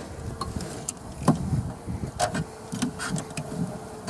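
Honeybees buzzing in an opened wooden hive, a steady hum, with scattered knocks and clicks as the hive boards are handled.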